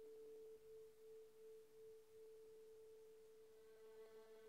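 Violin holding one soft, sustained note, almost a pure tone with few overtones. Near the end, other notes start above the held one.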